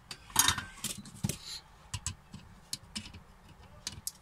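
Light clicks and knocks of hand tools being handled on a workbench, about ten scattered taps with a brief rustle early on, as side cutters are picked up.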